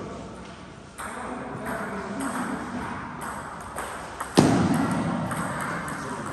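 Celluloid-type table tennis ball clicking off paddles and the table in a string of light, irregular hits. There is one much louder thud about four and a half seconds in.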